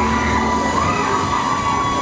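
Loud music from a fairground thrill ride's sound system mixed with crowd noise, with shouts from riders on the swinging pendulum ride.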